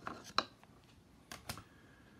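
A hard plastic card holder clicking and scraping against a wooden display stand as it is lifted off: a few sharp clicks in the first half-second, the loudest a little under half a second in, then two more clicks about a fifth of a second apart past the middle.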